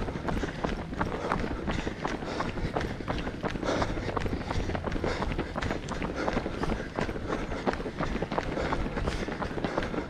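Running footsteps on a gravel path: the steady, even stride of a runner's feet striking the ground, with other runners' footfalls close by.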